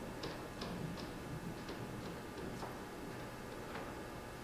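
Quiet room tone with about half a dozen faint, irregularly spaced clicks.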